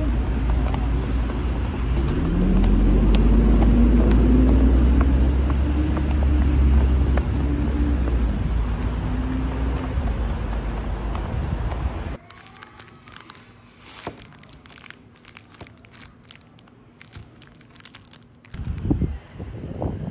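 Road traffic: a steady low rumble with a vehicle engine rising in pitch as it pulls away, for about twelve seconds. Then it cuts to much quieter ambience with scattered light clicks and taps, and a brief louder rush near the end.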